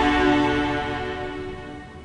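Background music with held, sustained notes, fading away over the two seconds.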